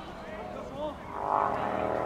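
A steady engine drone holding several even tones, growing louder from about a second in, over faint players' shouts at the start.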